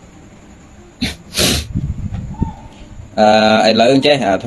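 A man's short, sharp rush of breath through the nose or mouth, like a sniff or stifled sneeze, about a second and a half in, between pauses in his talk; he starts speaking again near the end.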